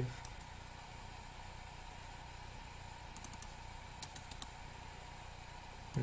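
Faint computer keyboard and mouse clicks in two short runs, about three seconds in and again about four seconds in, over a low steady hum.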